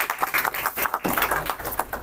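Applause: several people clapping in a room.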